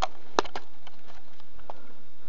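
Handling noise as a handheld camera is moved: a few sharp clicks and knocks, the loudest about half a second in, then fainter taps, over a steady hiss.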